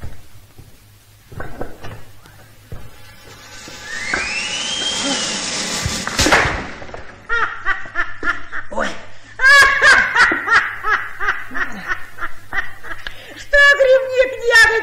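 A whooshing sound effect with a swooping pitch, ending in a sharp thud about six seconds in as a man is thrown off a fence onto the floor. Bursts of loud laughter follow.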